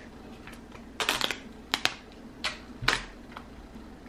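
Screen protector packaging being opened and handled on a table: a handful of short, sharp clicks and crinkles of cardboard and plastic, bunched between about one and three seconds in.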